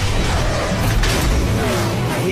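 Dramatic cartoon score mixed with rushing whoosh sound effects, with a surge about a second in and a falling glide near the end.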